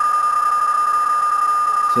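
PSK31 digital-mode signal from a Yaesu FT-847 transceiver's speaker: a steady high tone carrying a station's CQ call, with fainter steady tones of other signals alongside.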